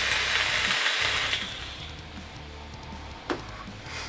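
Sub-ohm rebuildable dripping atomizer (Geekvape Peerless RDA, 0.16-ohm parallel coil at about 100 watts) being fired during a long lung draw: a loud hiss of air rushing through the atomizer and the coil sizzling, which stops about a second and a half in. A single short click near the end.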